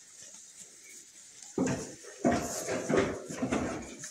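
Hay rustling and crunching as a goat pulls at it and eats close to the microphone, starting about one and a half seconds in after a quiet start.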